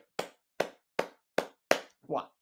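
Five sharp, evenly spaced hand taps, about two and a half a second, each short with a quick decay.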